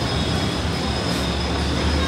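Steady background noise: a low hum with an even hiss over it, holding level with no distinct events.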